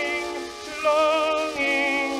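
Music from a 1916 Victor 78 rpm acoustic recording of a tenor with orchestra: a slow melody with wide vibrato, thin and without deep bass, with a short break between phrases about half a second in.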